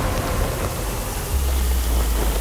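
Trailer sound design: a loud, steady rushing noise like heavy static, with a deep low rumble coming in about one and a half seconds in.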